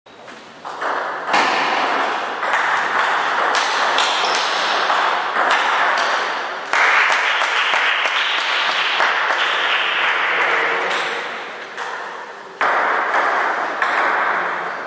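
Table tennis ball clicking off paddles and the table in quick, irregular hits during rallies, over a steady noisy background.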